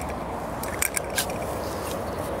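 Steady outdoor background noise with a few short, faint clicks and rustles near the middle, from a detection dog nosing through grass while searching for spent shell casings.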